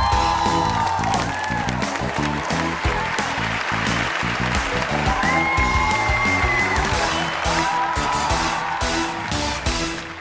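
Upbeat game-show entrance music with a steady beat, over studio-audience applause.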